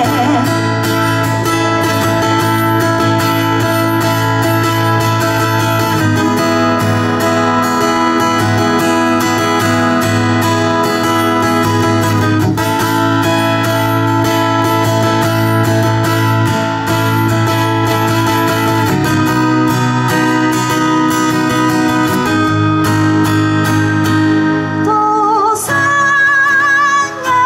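Acoustic guitar strummed alone in an instrumental break, the chord changing about every six seconds. A woman's singing comes back in about a second before the end.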